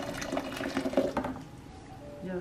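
Water poured from a metal pitcher into a foot-soak basin, splashing into the water already there, then stopping about a second and a half in.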